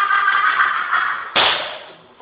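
A loud, drawn-out yell held on one pitch. About one and a half seconds in, a sharp impact cuts in and then fades.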